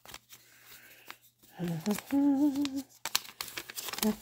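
A woman hums a short, wavering phrase of about a second midway through, without words. Around it come light paper rustling and small clicks from handling a small paper envelope and note on a table.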